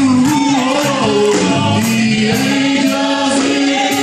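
A group of voices singing a gospel praise song together, with a man's voice amplified through a microphone. Long held notes over a steady beat of sharp strikes, a little under two a second.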